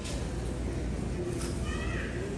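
A paper sandwich wrapper rustling in the hand over a steady room hum. Near the end comes a short, high-pitched cry that bends in pitch.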